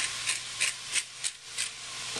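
Seasoning shaker being shaken over a pan of sliced zucchini, about three shakes a second, over the low sizzle of the vegetables cooking on medium-low heat.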